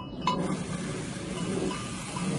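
Water running from a bathroom mixer tap into a ceramic washbasin, starting with a click about a quarter second in as the tap is turned on, then flowing steadily.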